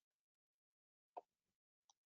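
Near silence on a video call, broken by one faint, short click about a second in.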